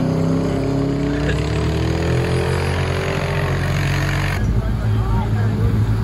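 Drag-racing car's engine at full throttle as it runs down the strip, its pitch rising steadily. About four and a half seconds in the sound switches abruptly to a lower, rougher engine rumble.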